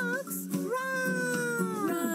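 Children's song: a voice sings 'A fox? Run!' over a steady backing track. It glides up and down at first, then holds one long, slowly falling note on 'run'.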